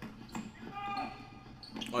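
A basketball dribbled on an indoor gym court: a few sharp, faint bounces, with faint voices in the hall.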